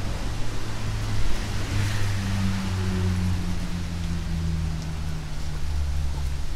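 Outdoor riverside ambience: a steady rushing noise from the flowing river and traffic, with a low engine-like hum whose pitch sinks slowly from about two seconds in.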